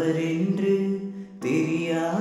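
A song played back with its sung vocal drowned in reverb from a plugin set at 100% wet on the vocal channel, along with the chords. The voice comes out as held notes that sound like only the echo and not clear, in two phrases with a short break about one and a half seconds in.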